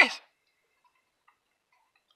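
A man's voice cutting off just after the start, then near silence with a few faint ticks.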